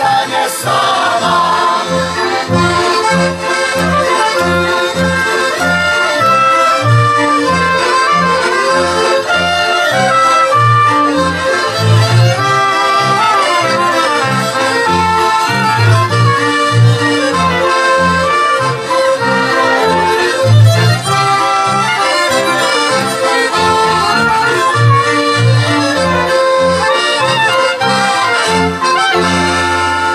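Polish regional folk band (kapela) playing an instrumental dance tune: accordion leading with violins, clarinet and trumpet over a double bass keeping a steady beat.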